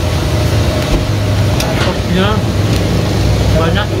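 A steady low engine rumble from road vehicles close by, with a few short snatches of background voices.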